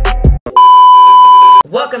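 An intro music beat with bass stops, and then a loud, steady electronic beep sounds for about a second, a single unchanging high tone that cuts off abruptly.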